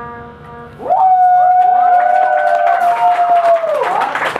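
A band's last sustained chord fades out, then about a second in the audience cheers: one long 'woo' shout that rises, holds and drops away near the end, over other shouts and scattered claps.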